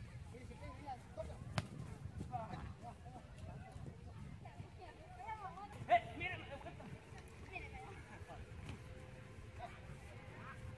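Distant voices of men calling out to each other during a pickup soccer game, with a louder shout about six seconds in, over a low rumble of wind on the microphone. A single sharp knock comes about a second and a half in.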